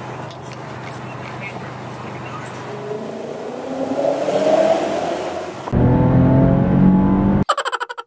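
A car driving, heard from inside the cabin: road noise and engine drone, with the engine note rising as it accelerates. About six seconds in it cuts abruptly to a louder revving engine. Near the end a fast pulsing sound begins.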